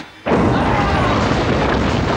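A sudden loud burst of noise about a quarter second in, which then carries on steadily with shouting voices over it: the game show's time-up effect and studio roar as the clock runs out.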